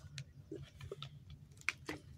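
Faint small mouth clicks and lip smacks from someone sipping coffee from a lidded paper cup, with a sharper click near the end.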